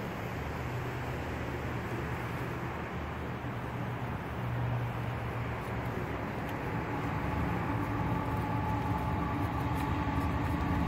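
Steady low mechanical rumble with a hum, like a motor running nearby, with faint steady tones coming in about halfway through.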